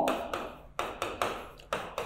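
A stylus tapping and rubbing on the glass screen of an interactive display as words are handwritten, giving a handful of short, sharp taps.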